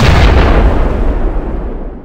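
A loud boom sound effect: a heavy rumbling impact that dies away over about two seconds.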